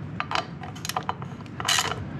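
Hand ratchet clicking in short, uneven strokes as it turns the spark plug in a Yamaha Virago 535's cylinder head, with a quick, louder run of clicks near the end.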